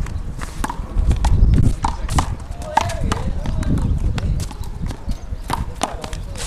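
One-wall handball rally: a small rubber ball sharply smacked by hand and slapping off a concrete wall and court, with sneakers scuffing on concrete, over a low rumble.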